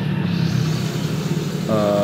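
Steady low rumble of a motor vehicle engine running in the background.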